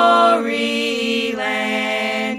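Women's voices singing a southern gospel song, holding long sustained notes in harmony that move to a new chord about half a second in and again just past the middle.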